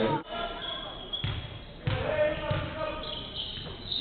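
Basketball dribbled on a hardwood court, with several low bounces roughly half a second apart, under short high squeaks of sneakers and players' voices echoing in the hall.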